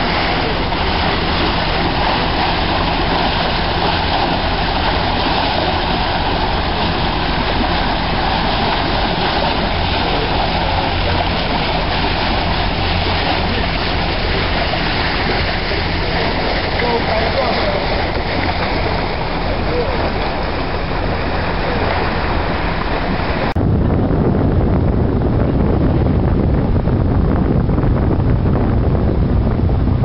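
Boat motor running steadily, with water rushing along the hull as the rafted-up sailboats motor ahead. About three-quarters of the way through, the sound cuts to a duller, deeper rumble.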